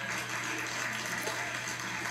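Studio audience laughing, a steady crowd noise, heard through a television's speaker.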